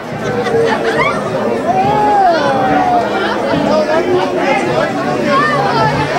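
Several people talking over one another at once, a loud, steady mix of voices with no single speaker standing out.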